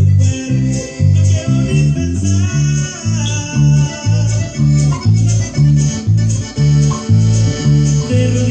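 Electric bass guitar playing a steady line of plucked low notes, about two a second, along with the full band of a Latin song.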